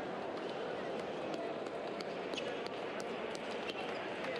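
Table tennis hall ambience: a steady babble of many voices, with sharp clicks of balls striking tables and bats from the matches around, several a second and thicker in the second half.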